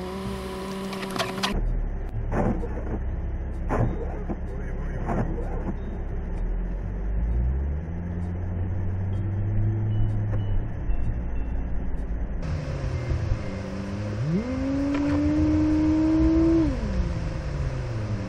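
A car's engine and road noise heard from inside the cabin, with a few sharp knocks in the first few seconds. Near the end the engine revs up quickly, holds, then falls away as the car accelerates.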